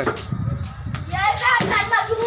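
Mostly voices: people calling out during a street game, with a low rumble in the first second.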